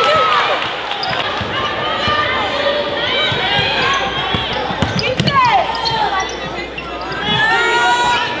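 Basketball game play in a gymnasium: the ball bouncing on the hardwood court and sneakers squeaking in short sliding squeals, over the chatter and shouts of players and crowd.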